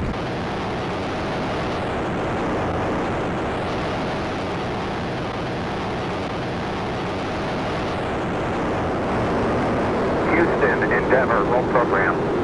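The Space Shuttle's solid rocket boosters and main engines firing at liftoff and during the climb: a loud, steady, unbroken rocket roar.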